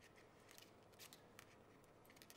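Near silence with a few faint, scattered clicks of knitting needles as stitches are worked.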